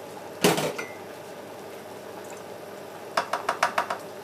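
A spoon knocking and scraping against a glass jar of pesto: one sharp knock about half a second in, then a quick run of clinks, several a second, near the end.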